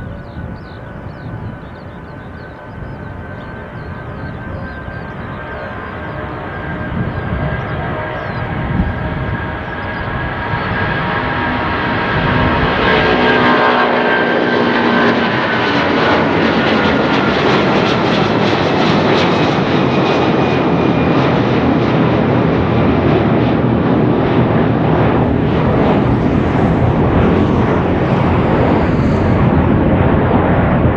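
Airbus A330-200 twin turbofan engines at takeoff thrust, growing steadily louder as the airliner rolls and lifts off. About halfway through, the engine whine drops in pitch as the aircraft passes, leaving a loud, steady rumble as it climbs away.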